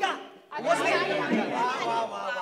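Several people's voices chattering over one another, with a short lull about half a second in.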